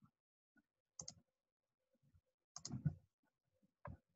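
Faint clicks and taps of computer input while working on screen: one click about a second in, a short cluster of louder taps around two and a half seconds in, and another click just before the end.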